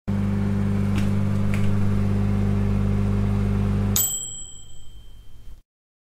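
A steady low electrical hum for about four seconds, then a single bright bell-like ding that rings out and fades.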